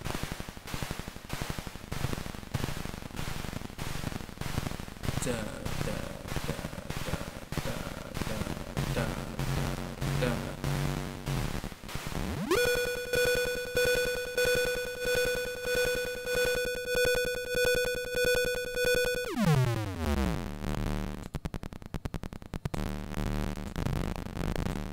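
Modular synthesizer patch sounding a regular, rhythmic pulsing noise while its settings are tweaked during early sound design. About halfway through, a steady, bright pitched tone rises in quickly and holds for several seconds, then sweeps down in pitch into a low rumble before the pulsing returns.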